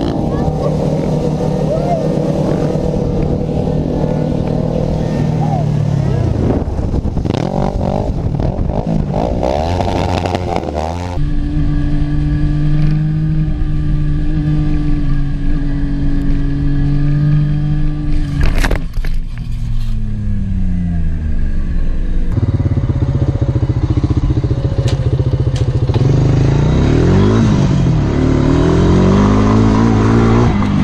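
Motorcycle engines running and revving in three short stretches, the pitch sometimes held steady and sometimes rising and falling, with abrupt changes in sound about a third and two thirds of the way through. A single sharp crack comes a little past the middle.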